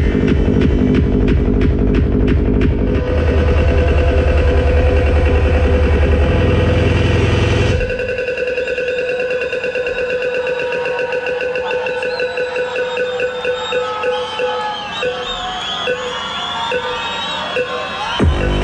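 Progressive psytrance played loud over a festival sound system: a driving kick drum and heavy bassline until about eight seconds in, when the kick and bass cut out for a breakdown of held synth tones, with wavering higher synth lines in the second half.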